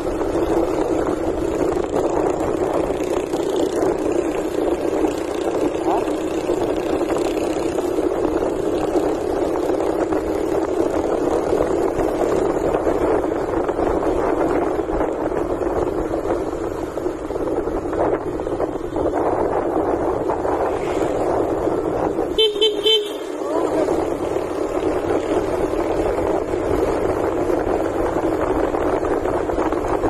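Steady rush of wind and road noise from a moving motorcycle, with a vehicle horn beeping in a quick burst of short toots about two-thirds of the way through.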